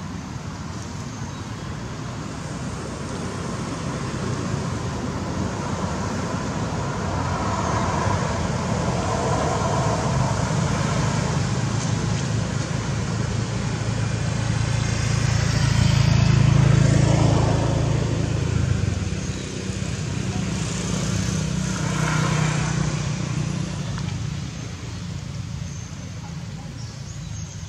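A motor vehicle's engine rumbling as it passes nearby. It grows louder to a peak about two-thirds of the way through, then fades, with a second, smaller swell near the end.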